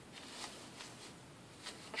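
A few short, faint rasps of a Japanese kamisori straight razor scraping through lathered stubble.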